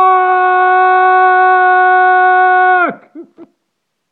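A man's long, loud yell of "fuck!", held at one high pitch for about three seconds before it falls sharply and breaks off. A brief laugh follows.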